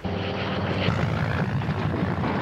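A propeller aircraft's engine runs loud and steady. It cuts in abruptly at the start.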